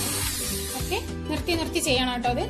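Background music with a voice over it. Under the music an electric hand mixer whirs, its beaters whisking in batter, and the whirr stops about a second in.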